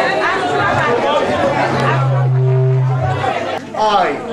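Several people talking over one another. In the middle a steady low tone is held for under two seconds. A sharp click and a drop in level come near the end.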